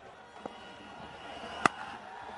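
Cricket bat striking the ball once, a single sharp crack near the end, with a fainter click about half a second in.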